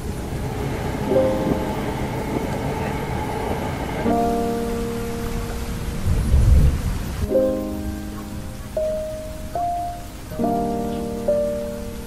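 Lofi music: soft held chords that change about every three seconds, over a steady rain-like hiss, with a low rumble like distant thunder about six seconds in.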